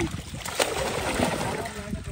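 Fish thrashing and splashing in shallow water crowded inside a hauled-in net, with water sloshing as hands grab at them; a sharp splash comes about half a second in.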